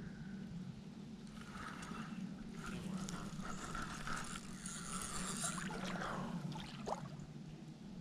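Spincast fishing reel being cranked to reel in line: a soft, steady whirring, with rustle from the rod and reel being handled and a few faint clicks near the end.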